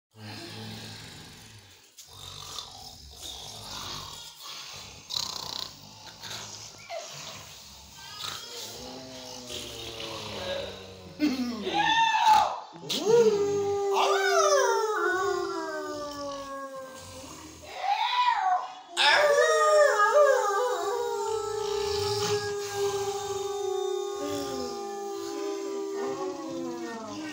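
Canine howling: long drawn-out howls that rise, hold and slowly fall, beginning about halfway through, after a faint, low background with music.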